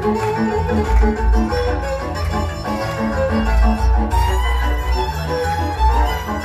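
Hungarian folk dance music from a fiddle-led string band: a violin melody over a quick, even accompaniment beat of about four strokes a second and a double bass.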